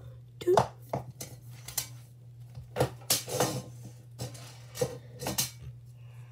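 A paper ball knocking around inside a paper cup: a string of sharp, irregular taps and rattles, some in quick clusters, over a steady low hum.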